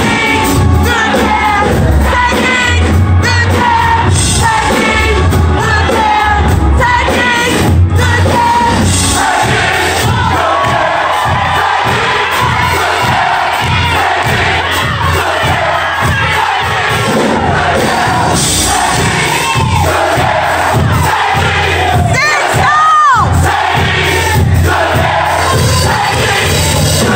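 Gospel choir and congregation singing over loud accompaniment with a steady bass beat, the crowd shouting along; a high rising whoop near the end.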